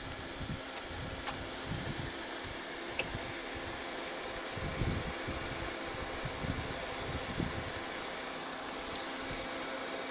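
Steady whir of the solar generator's inverter cooling fan, with wind buffeting the microphone in low gusts and one sharp click about three seconds in.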